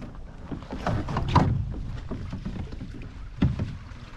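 Water slapping and splashing against the hull of a small sailboat under way, over a steady rumble of wind on the microphone. The loudest splash comes about a second and a half in, with another just before the end.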